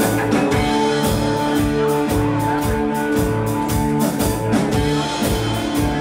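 Live ska band playing: electric guitars, bass and drum kit in a steady beat, with held notes over the rhythm.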